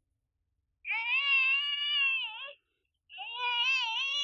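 A baby crying: two long, wavering wails with a short break between them.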